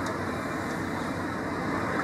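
Steady outdoor background noise, an even rumble and hiss with no distinct engine note or sudden events.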